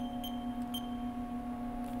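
Short high beeps from a Haas CNC control's keypad as keys are pressed to enter a value, three in the first second, over a steady hum.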